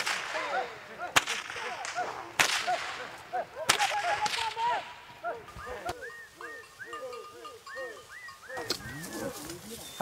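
Stockwhip cracks during a cattle muster: about five sharp, single cracks spaced a second or more apart, over a run of short repeated rising-and-falling calls.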